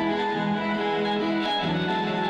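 Electric guitar played live through an amplifier and effects, holding long, overlapping notes that step to new pitches every half second or so, at a steady level.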